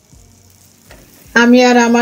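Scrambled eggs frying in a cast-iron skillet, a faint steady sizzle. About a second and a half in, a voice starts speaking loudly over it.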